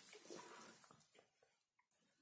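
Near silence, with a faint tap near the end as a small circuit-board module is set down on paper.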